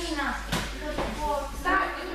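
Indistinct talking voices in a training hall, with one sharp knock about half a second in.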